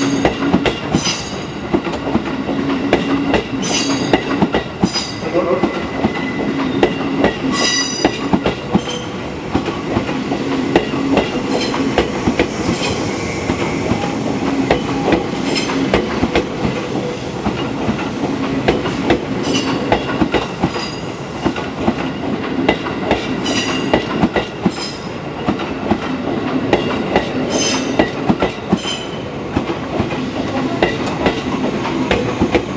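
A JR 211 series electric multiple unit rolls slowly past as it pulls into the station. Its wheels clack over rail joints and points in clusters about every four seconds, one for each car, over a steady running rumble and a low hum.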